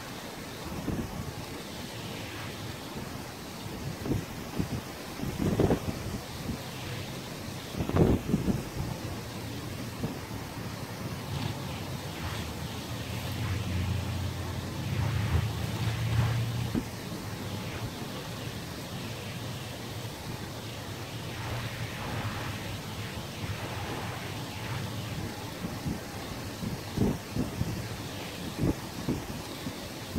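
Wind gusting on the microphone over a steady wash of sea noise, with irregular buffeting thumps. A low engine drone rises and fades in the middle.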